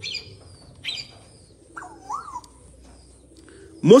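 Birds chirping in the background: two short high chirps near the start and about a second in, then a rising-and-falling call about two seconds in.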